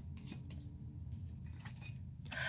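A few faint clicks and rustles of tarot cards being handled and laid down, over a low steady hum.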